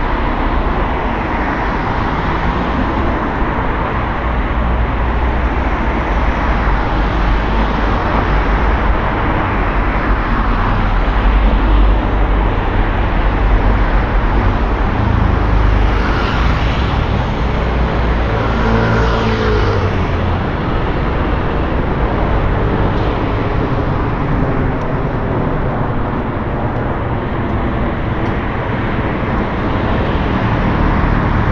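Steady city road traffic, with cars driving past close by. Near the middle, a car passing close gives an engine sound that rises and falls as it goes by.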